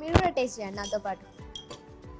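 A sharp clink of a metal kitchen utensil striking a dish near the start, over voices and background music.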